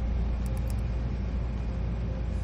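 Steady low rumble of workshop background noise, with a few light clicks about half a second in.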